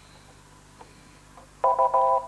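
Faint studio hum, then about one and a half seconds in a loud, steady electronic beep of several tones sounds, like a chord. It is the quiz-show signal that the time to answer has run out with no contestant buzzing in.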